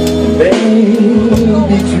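Live band playing a song, with a voice singing over electric guitar and a steady beat.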